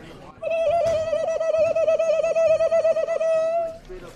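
A man's high, sustained whoop, warbled by a hand patting rapidly over his mouth at about eight beats a second. It lasts about three seconds and stops short of the end.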